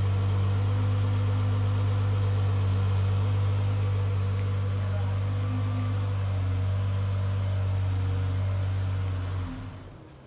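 2012 Dodge Charger's 3.6-litre V6 idling through its stock exhaust, a steady low drone at the tailpipes. The sound drops away near the end.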